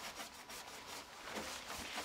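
Cloth towel rubbing over a car's painted bodywork around the open bonnet, faint wiping strokes.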